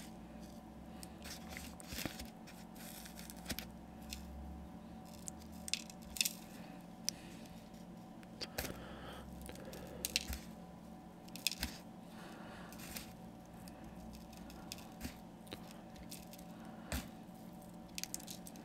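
Faint scattered ticks and rustles of basing grit (sand, flock, moss, small stones and kitty litter) being pinched from a tub and sprinkled onto a glue-coated miniature base, over a faint steady hum.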